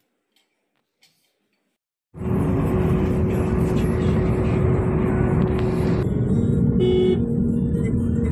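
Near silence for about two seconds, then loud, steady road and engine noise from a moving car starts suddenly, with a few held tones over it.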